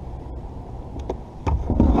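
Steady low rumble with two light clicks about a second in, then louder bumps near the end: handling noise from a kayaker shifting about in a plastic kayak.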